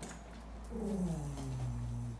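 A dog growling: one drawn-out, low growl that falls in pitch, starting about a third of the way in and lasting about a second.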